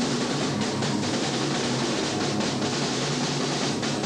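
A rock band playing live: electric guitar, bass guitar and drum kit, loud and continuous.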